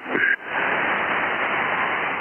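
Hiss of band noise from an Icom IC-7300 receiving on 20-metre upper sideband, heard through the radio's narrow audio passband. It sets in right after a clipped last syllable from the distant station as that station stops transmitting.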